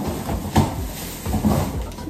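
Plastic shopping bag rustling and crinkling as items are lifted out of it, with a louder knock about half a second in.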